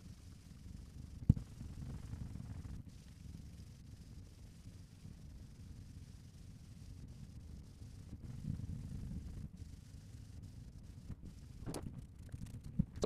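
Faint rustling of a twist comb rubbed in circles over short hair, over a low room rumble, with one sharp click a little over a second in.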